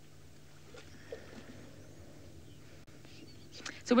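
Quiet outdoor background with a faint, steady low hum and a few faint small sounds; a woman starts speaking near the end.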